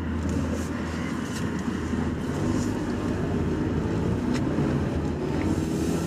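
Car cabin noise while driving: a steady low engine and road hum with a light hiss of tyre and wind noise, and a few faint ticks.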